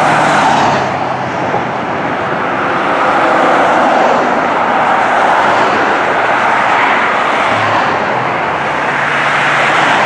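Road traffic passing close by on a busy road, a pickup truck and a car going past, with the 2008 Spartan/Crimson fire engine approaching. The noise is loud and fairly even throughout.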